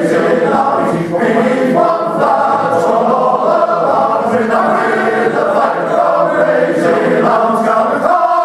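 Male voice choir singing in full harmony, long held chords that move about once a second.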